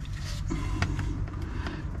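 A few light taps and clicks from a hand oil pump's plastic hose being handled and pushed into place, over a low steady rumble.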